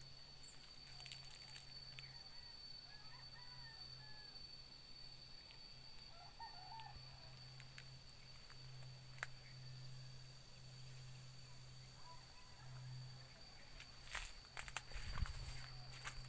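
Faint outdoor ambience in tropical brush: a steady high-pitched whine and low hum, with a few faint bird chirps. Near the end come rustling, a few clicks and a low thump as someone moves through the vegetation.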